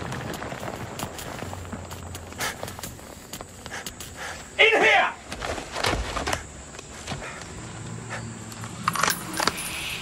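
A single loud shout about halfway through, over a low steady rumble with scattered short knocks and clicks.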